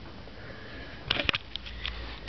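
A short cluster of sharp clicks and rustle about a second in, then a few fainter ticks, over a low steady room hum: handling noise from the handheld camera being moved.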